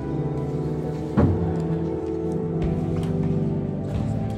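Slow church music of long held chords that shift pitch every second or so. A single sharp knock sounds about a second in.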